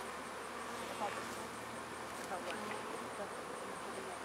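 Honeybees buzzing around an open hive during a colony split: a steady, even hum.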